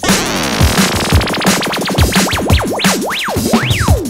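Drum and bass loops triggered in the Launchpad for iOS app: a drum-machine beat under a synth sweep effect whose pitch zigzags rapidly up and down, slowing as it goes and ending on one long rising glide.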